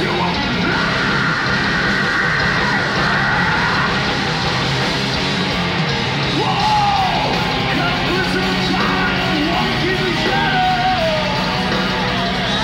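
Metal band playing live, with a shouted vocal over loud guitars and drums, heard from the crowd.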